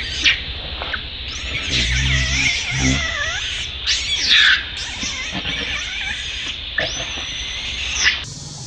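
Baby long-tailed macaque crying in a string of high, wavering screams that glide up and down in pitch, with a loud cry about four seconds in and a long held cry near the end: an infant's tantrum.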